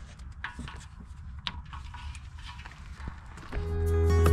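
Faint scattered clicks and handling noises over a low steady background, then acoustic guitar music fades in near the end and becomes the loudest sound.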